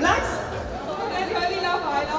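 Indistinct chatter: several voices talking over one another in a large hall.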